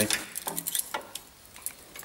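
A few light metallic clicks and clinks, scattered through the two seconds, as metal parts and tools are handled at a Land Rover's front brake and swivel hub while a plate is worked off.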